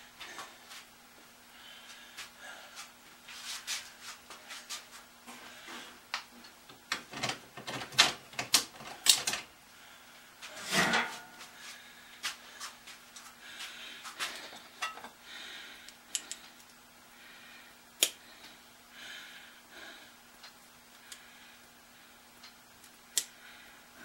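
Scattered clicks, knocks and clatter of metal hand tools being picked up and put down on a workbench, with a few louder knocks, over a faint steady hum.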